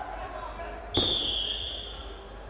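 A referee's whistle: one sharp, high blast about a second in that fades away over the next second, over voices calling in the hall.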